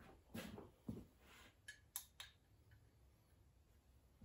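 Faint handling rustles, then three quick sharp clicks about two seconds in, as a digital crane scale is switched on.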